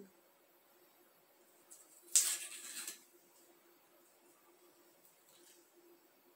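The cork stopper of a Glenfarclas 12 whisky bottle scraping in the neck as it is worked out, one short rasp about two seconds in. It is not the clean sound of a sound cork: the cork is breaking off in the neck.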